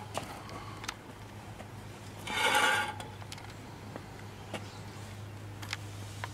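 A few faint light clicks and taps from a microscope and petri dish being handled on a glass tabletop, over a steady low hum. A louder sound lasting under a second comes about two seconds in.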